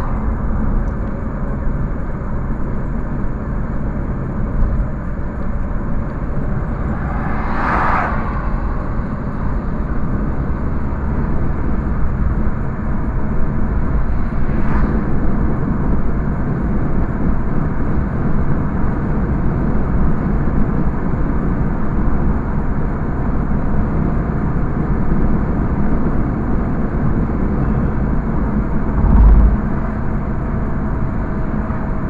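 Steady road and engine noise inside a moving car's cabin. Two brief louder swells come about eight and fifteen seconds in, and a low thump near the end.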